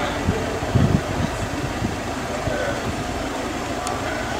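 A steady low rumble, like a running engine or ventilation unit, with a few low thumps a little under a second in.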